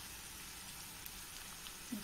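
Chopped onions and spices frying in oil in a cast-iron kadai: a faint, steady sizzle with a few tiny crackles.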